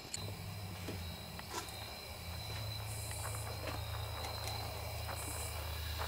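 Steady low hum with a faint high whine above it, and a few light clicks of metal brake parts being handled.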